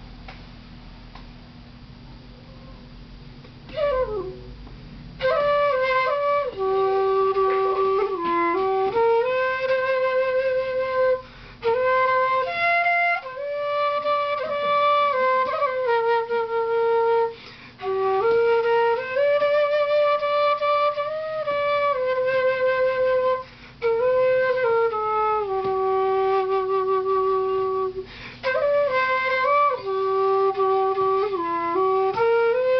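Vietnamese bamboo transverse flute (sáo trúc) playing a slow melody with vibrato, after a few seconds of quiet. It opens with a downward slide about four seconds in, and its phrases are broken by short pauses.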